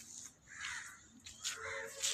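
Two harsh bird calls, the first about half a second in and the second about a second and a half in.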